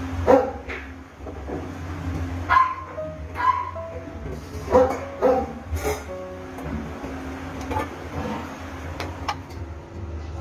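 A dog barking several times, in short sharp barks during the first six seconds, over soft background music with held notes.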